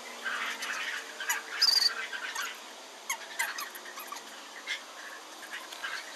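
Outdoor sound played at fast-forward speed: a scatter of short, high chirps and squeaks, with one brief, louder shrill note about one and a half seconds in.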